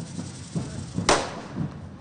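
Correfoc fireworks: a single sharp firecracker bang about a second in, the loudest thing here, amid scattered duller low thumps.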